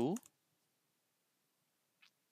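The tail of a spoken phrase, then a single short computer click as a notebook cell is set running; after that, near silence.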